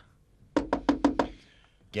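Knocking on a door: a quick run of about five or six knocks.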